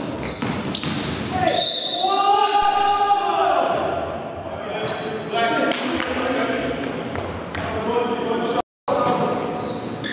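Basketball being dribbled and bounced on a gym floor during play, with players' voices shouting across the hall. The sound cuts out for a moment near the end.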